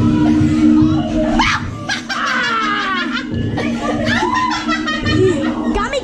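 Excited voices and bursts of laughter from a group in a dark haunted house, over a steady low droning tone.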